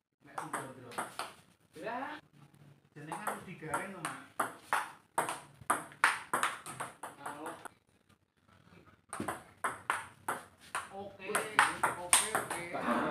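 Table tennis ball clicking back and forth in a rally, sharp taps of the ball on the rubber paddles and the table. The clicks come in runs, with a short lull about eight seconds in.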